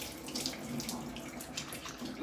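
Water running from a tap in a steady stream.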